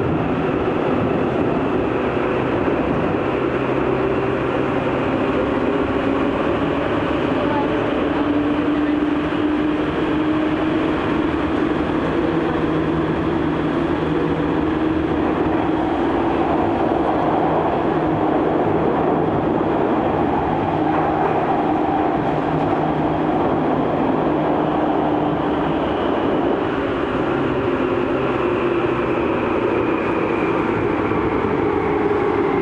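Tokyu 8500 series commuter train running, heard from inside the passenger car: a steady rumble of wheels and running gear, with a low whine that slowly drifts up and down in pitch.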